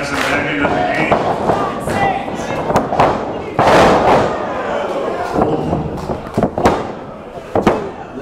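Sharp smacks of bodies and strikes in a wrestling ring amid crowd shouts. About three and a half seconds in, a wrestler is slammed onto the ring mat with a loud crash, a spinebuster. Several more sharp slaps follow near the end.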